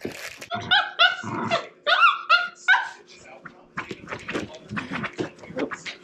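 Shiba Inus play-fighting: a quick run of about six high-pitched play barks in the first three seconds, then scuffling and paw knocks.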